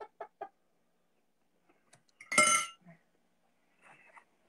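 A man's stifled laughter: a few quick snickers, then one loud, high-pitched squeal-like laugh about two seconds in.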